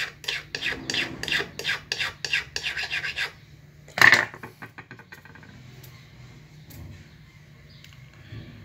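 A dull flat KF file rasped in short, quick strokes along the inner cutting edge of a pair of nippers, a light finishing pass on the inner bevel, for about three seconds. About four seconds in there is one loud, sharp clink.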